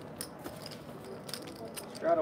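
Poker chips clicking as they are handled and pushed onto the table felt, several short sharp clicks at irregular intervals.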